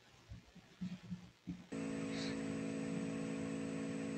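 A few faint soft knocks, then a little under two seconds in a steady electrical hum of several held tones switches on suddenly: the remote participant's audio line opening on the room's sound system.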